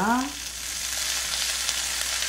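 Dried anchovies frying in garlic oil in a nonstick frying pan: a steady sizzling hiss.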